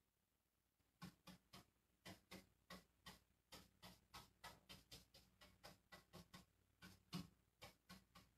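Faint soft taps of a paintbrush dabbing paint onto a painted drawer front, about three a second, starting about a second in.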